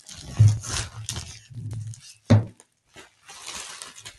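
Plastic bubble wrap crinkling and rustling as gloved hands unwrap it, with two dull low thumps, one about half a second in and a louder one a little after two seconds. A brief hush follows before the rustling picks up again.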